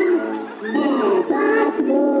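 A song with singing voices, the notes held and gliding, with a short dip about half a second in.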